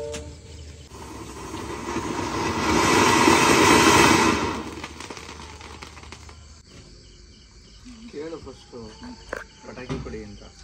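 A ground fountain firework hissing as it sprays sparks. The hiss swells about a second in, is loudest around three to four seconds, and dies away by about five seconds.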